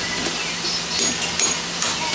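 Butcher's cleaver chopping beef on a wooden chopping block: three sharp chops in the second half.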